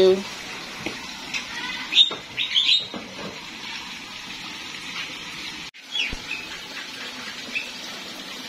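Steady trickle of water running down an artificial rock waterfall in an aviary, with short high bird chirps a few times.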